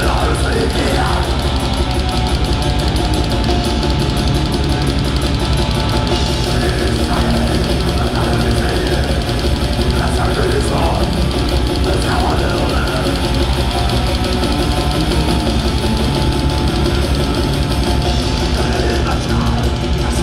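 Metal band playing live at full volume: distorted guitars over fast, dense drumming, with a voice coming in at intervals.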